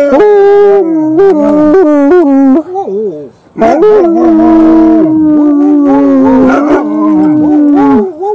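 Siberian husky howling: a wavering, broken howl for the first two and a half seconds, then, after a short pause, one long, steady howl.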